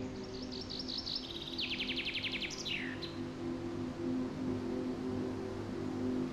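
Soft, sustained music with a songbird singing over it in the first half: a run of looping whistled notes, then a fast trill and one falling note, ending about three seconds in.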